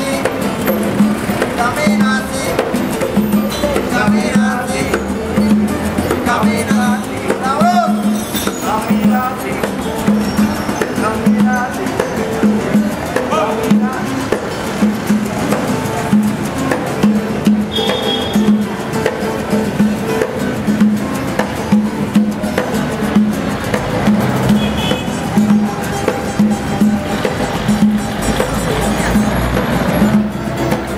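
Acoustic street band of two guitars and a hand drum playing a steady, rhythmic tune, the drum keeping an even low beat throughout.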